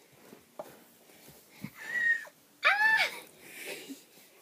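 Two short, high-pitched wordless vocal sounds from a child, about two and three seconds in, the second rising then falling. Before them come a couple of light knocks from plastic toys being handled.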